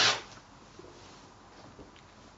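Rotary cutter rolling along an acrylic ruler, slicing through four layers of cotton fabric on a cutting mat: a faint, even rustling cut, after a short hiss right at the start.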